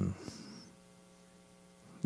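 Faint, steady electrical mains hum from the microphone and sound system, nearly at silence level, heard in a gap in speech.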